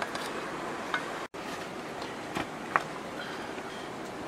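Steady outdoor background noise with a few light clicks and taps, about four of them, the sharpest between two and three seconds in. The sound breaks off briefly about a second in.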